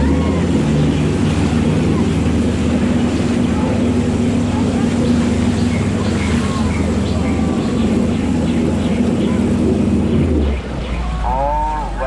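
Tour boat's engine running steadily at higher speed as a low drone, over rushing, splashing water from the river's water jets; the engine eases off about ten seconds in.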